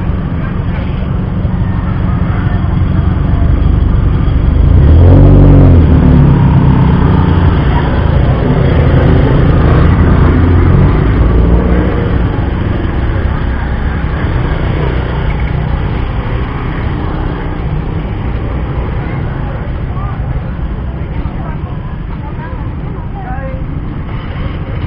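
Road traffic of motorbikes and cars idling and moving off, with people talking. One vehicle passes close and is loudest about five seconds in, and the engine noise slowly fades toward the end.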